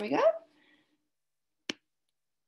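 A woman's voice finishes a short phrase, then after a pause a single sharp click of a computer mouse button comes near the end.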